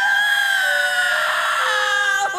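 A cartoon boy's loud, drawn-out wailing cry, held for the full two seconds with its pitch dropping in steps.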